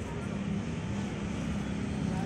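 A steady low mechanical drone with faint voices in the background.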